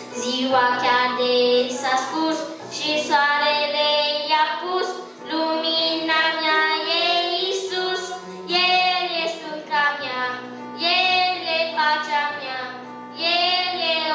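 A young boy singing a song into a microphone, in phrases of a second or two with short breaths between, accompanied by an electronic keyboard holding steady low notes.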